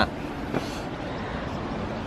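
Steady outdoor background noise, a low even rumble.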